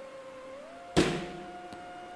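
Dark background music of held tones that step up in pitch, then a sudden impact hit about a second in that rings out and fades under the held notes.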